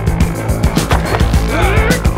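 Action-film score with steady bass notes and sharp percussive hits at a regular pulse, joined by wavering, gliding tones near the end.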